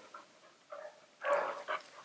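A young boxer dog makes one brief, soft vocal sound about a second in.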